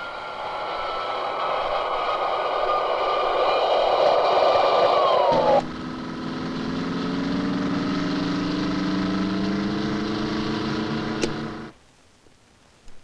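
Motor engine running with a whining tone that slowly falls, dipping sharply just before it cuts off. It is followed at once by a lower engine note that climbs slowly and stops abruptly near the end.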